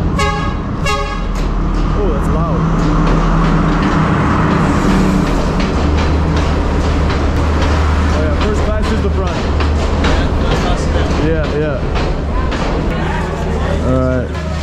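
A diesel passenger train sounding its horn in two short toots, then pulling in alongside the platform with a steady, heavy engine rumble and rolling noise that gets louder about halfway through. Voices of the waiting crowd come through now and then.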